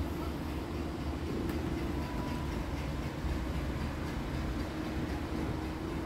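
DAF CF truck's diesel engine idling, heard from inside the cab as a steady low hum.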